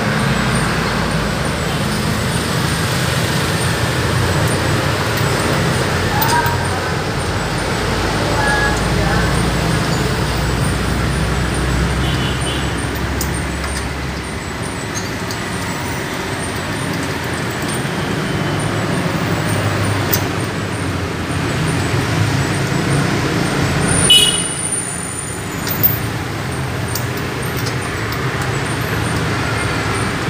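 Steady road-traffic rumble with indistinct voices underneath, and two short, sharp sounds near the end.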